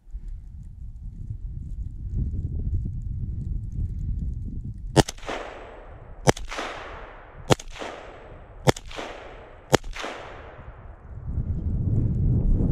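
Five rifle shots, a little over a second apart, each with a long echo fading out across the forest. A low rumble of movement runs under them.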